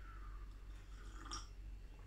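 A person faintly sipping tea from a mug and swallowing, with a small wet click about a second and a half in.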